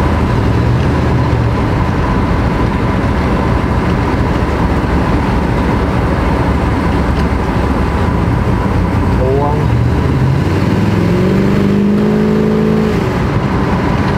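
Chevrolet El Camino's 454 big-block V8 running on the road during a test drive, with road noise and a held, steadier engine note about eleven seconds in. The engine runs rough and rich. The owner puts this down to too much fuel, perhaps a stuck carburettor float, or to the engine being cold.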